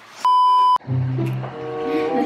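A loud electronic bleep tone of one steady pitch lasting about half a second, starting and stopping sharply, followed by background music with a steady bass line.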